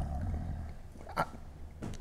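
A low hummed murmur from a man trails off, and a single short click comes about a second in.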